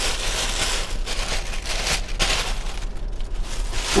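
Thin clear plastic bag rustling and crinkling as it is handled, an uneven crackle with no steady rhythm.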